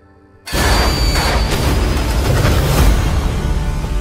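Trailer soundtrack: a soft held music tone, then about half a second in a sudden loud boom that opens into a dense, loud wall of music and impact effects with a few sharp hits.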